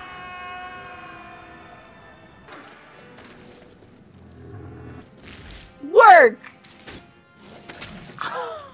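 Film soundtrack: orchestral score holding sustained chords, then a loud cry that falls sharply in pitch about six seconds in.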